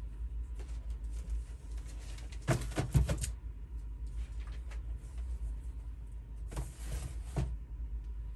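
Notepads and papers being handled and put away off to the side: two short bouts of rustling with light knocks, a little after two seconds in and again near the end, over a steady low electrical hum.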